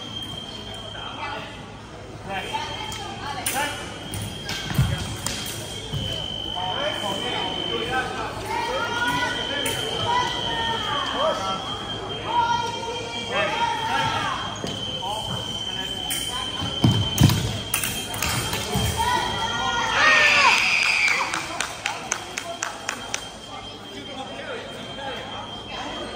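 Fencers' footwork on a gym floor: shoes squeaking in short sweeps, with a few heavy stamps and lunges thudding, and a run of sharp clicks and a louder burst near the end. A high steady electronic tone sounds on and off throughout.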